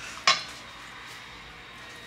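A single sharp clink of kitchenware knocking against a metal salad bowl, with a brief ring, about a quarter of a second in.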